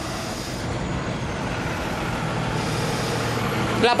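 Street traffic below, with a heavy vehicle passing: a steady engine and road noise that swells gradually.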